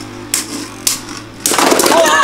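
Two Beyblade Burst spinning tops whirring against each other in a plastic stadium, with two sharp clacks as they collide. Near the end comes a sudden loud clatter as one top bursts apart and its pieces scatter.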